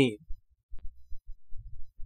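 A narrator's voice ends a phrase, then a pause holding only faint, low, irregular thumps.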